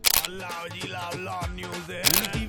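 A camera-shutter click sound effect, followed by upbeat background music with a beat.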